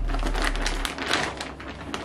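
Plastic poly mailer bag crinkling and rustling as it is handled and pulled open, in many irregular crackles.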